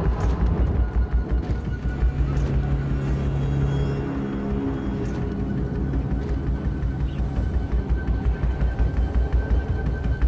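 Ominous film score: a low, pulsing drone under long held notes.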